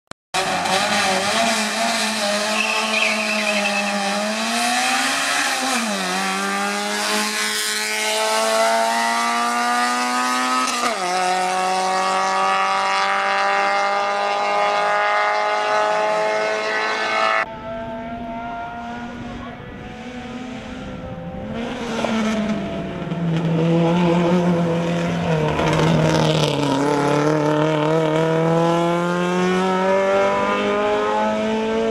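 Citroen AX race car's engine accelerating hard uphill, its pitch climbing through the gears and dropping at each upshift, about six and eleven seconds in. About halfway through the sound cuts off suddenly to a fainter engine, which grows louder and climbs in pitch again as the car comes nearer.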